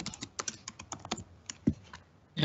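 Typing on a computer keyboard: a quick, uneven run of about a dozen key clicks as a password is entered, stopping about a second and a half in. A brief low sound follows near the end.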